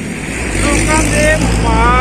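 A motor vehicle passing close by on the road, a heavy low engine rumble building about half a second in, under a man's voice.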